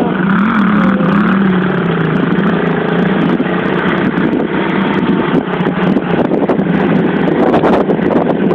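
Small pit bike engine running and being revved, its pitch wavering up and down as the throttle is worked.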